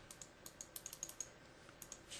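Faint, rapid clicking at a computer: a quick run of about ten clicks, a pause, then two more near the end.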